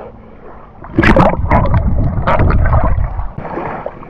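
Shallow seawater splashing and sloshing against a camera held at the surface, with a low rumble of water on the microphone; it starts about a second in and eases off in the last second.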